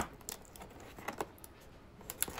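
Fingers prying at the tuck flap of a cardboard box: one sharp click at the start, then a few faint ticks of cardboard being handled.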